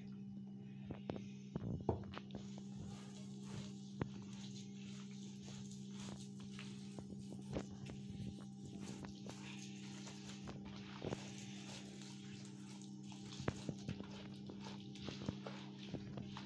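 A hand squeezing and rubbing a crumbly butter, sugar and oil mixture in a glazed clay bowl: soft rubbing with scattered light knocks and taps against the bowl, the sharpest about two seconds in.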